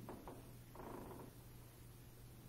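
Near-silent room tone with a steady low hum, broken by a few faint brief sounds in the first second or so.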